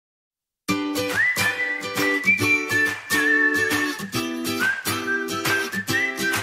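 Background music starting under a second in after a short silence: a whistled melody over rhythmic plucked-string chords.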